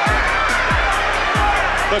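Background music with a beat: a deep bass note that slides down in pitch roughly every two-thirds of a second, with regular hi-hat ticks over it.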